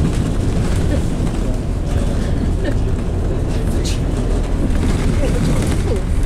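Steady low rumble of a moving bus heard from inside the passenger cabin, engine and road noise, with faint voices underneath and a brief high hiss about four seconds in.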